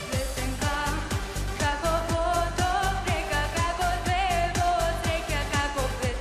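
Upbeat pop song with a steady beat of about two strikes a second, and a girl's sung melody line that enters about a second and a half in, with some vibrato on its held notes.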